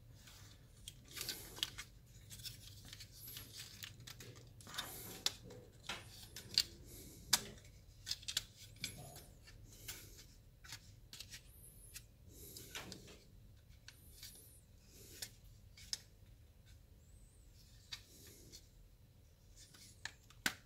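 Plastic parts of a Wei Jiang Sabertooth Transformers figure clicking and scraping as they are turned and pressed into place: scattered, irregular sharp clicks with short rubbing sounds between them.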